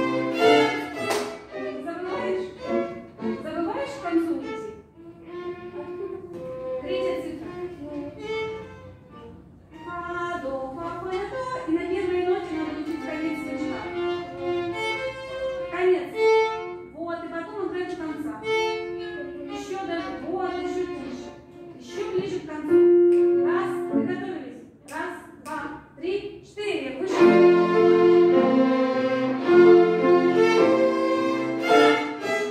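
A children's string ensemble of violins plays a piece in several parts, in rehearsal. The sound is full at the start, thinner and quieter through the middle, and full again from about three seconds before the end.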